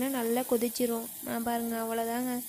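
A person's voice in long, level held notes on nearly one pitch, over a faint hiss from the mushroom kulambu simmering in the pot.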